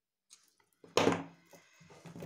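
A single dull thump about halfway through, with a faint click shortly before it, from near silence.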